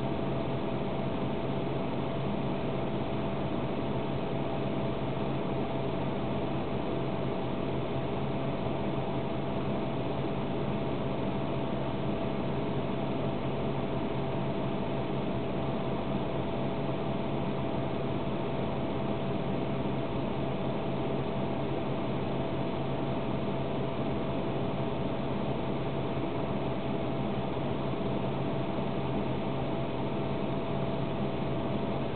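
Steady drone of a parked car idling, heard from inside the cabin: an even hum with a constant low tone and a fainter higher one, unchanging throughout.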